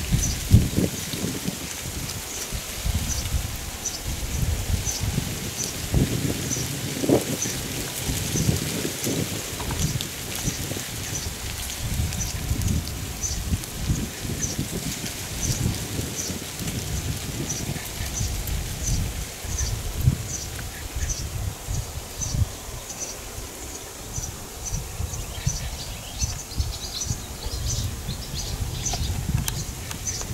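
A thrush repeating a short, high call about once or twice a second, over an uneven low rumble of wind on the microphone.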